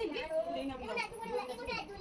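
Several high voices, children's among them, talking and calling over one another, with no clear words.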